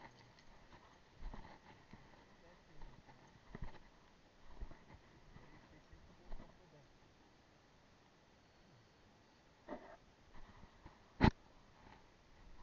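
Scattered faint knocks and rubbing from a small action camera being handled and moved on the sand, with one sharp click about eleven seconds in.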